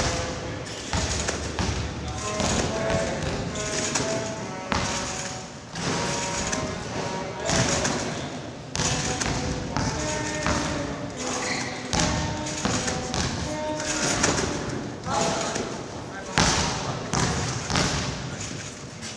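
Trampoline bed thudding at each landing as a gymnast bounces repeatedly, a series of thuds about a second or so apart.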